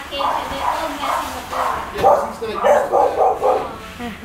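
An excited dog on a leash giving a run of short calls in the first couple of seconds. A person laughs in quick bursts near the end.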